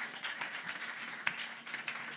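Audience applauding, a scattered round of hand claps.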